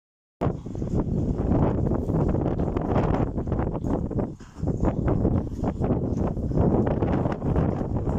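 Wind buffeting the microphone, a loud rumbling noise with gusty crackles that drops away briefly about four seconds in.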